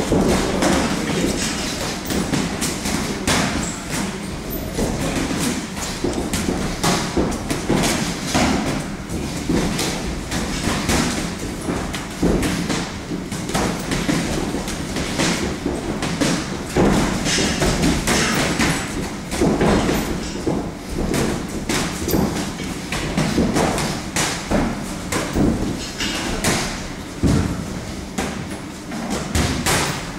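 Boxing gloves landing punches during sparring: a string of irregular thuds, several a second.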